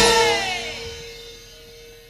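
Javanese gamelan closing a piece: a last stroke at the very start, then the ringing of the bronze instruments dies away over about a second and a half, with one lower tone lingering longest.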